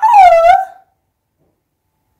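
A woman's drawn-out vocal 'ooh', dipping in pitch and rising again, ending within the first second.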